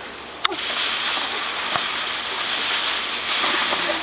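Used clay cat litter pouring in a steady hissing stream out of a plastic bag split at the bottom, pattering onto a person's head and shoulders. The pour starts about half a second in, right after a brief sharp click.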